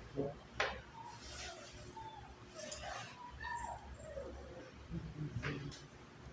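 Chess pieces set down on the board: a sharp click about half a second in and another near the end. Between them, faint short wavering animal calls.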